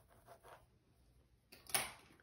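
Faint scratching and rustling of hair being parted with a pin-tail comb and handled by hand, with one short louder rustle near the end.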